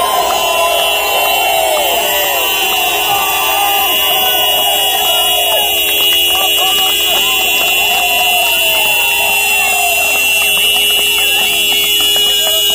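A crowd cheering and shouting, many high voices overlapping. A steady high-pitched tone sounds underneath the whole time.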